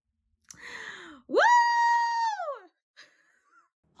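A woman's excited "woo!" cheer: after a short breathy sound, her voice swoops up into a loud, high whoop, holds it for about a second and slides back down.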